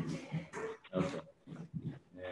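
Faint, muffled, indistinct voices: several short voiced sounds with pauses between them.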